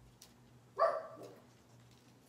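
A dog barks once, a short single bark about a second in.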